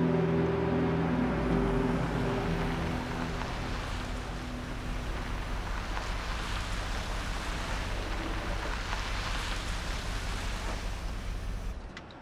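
A Range Rover SUV driving along a narrow street, a steady rush of engine and tyre noise that grows brighter toward the end and cuts off abruptly just before it ends. Held notes of background music fade out over the first few seconds.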